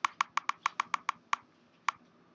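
A quick run of about ten sharp computer clicks, fast at first, then a pause before one last click near the end: the increase-text-size button being clicked over and over to enlarge the page.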